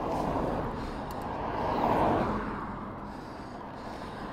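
A van passing in the opposite lane: road noise that swells to its loudest about two seconds in and then fades away.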